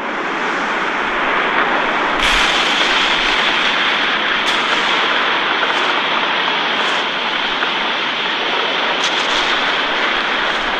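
Long explosion sound effect: a loud, steady rushing rumble that swells in over the first second and turns hissier about two seconds in, with a few faint crackles. It stands for the massive explosion of the ghost containment unit.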